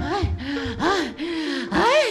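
A man panting heavily in short voiced gasps, about three or four a second, with a louder, higher gasp near the end: a worn-out, out-of-breath sound after running.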